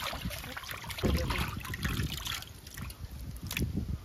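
Hands sloshing and swishing pieces of cut fish in a basin of water, with water trickling and splashing irregularly.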